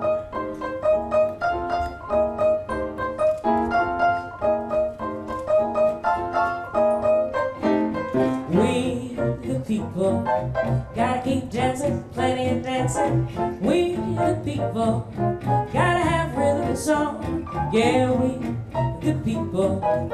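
Small jazz group playing live: the piano plays a repeated chord figure on its own, then about eight seconds in a woman starts singing over piano and double bass.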